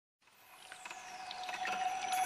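Song intro: a trickling, pouring-water sound effect fades in from silence about half a second in, with scattered small drips. A faint held tone and a high falling sweep sit under it, ahead of the music.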